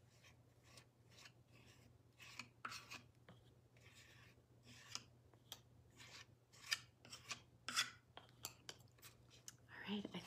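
Faint, short scratchy strokes, about two a second and irregular, of a small hand tool rubbing collage paper down onto a wooden birdhouse coated with gel medium.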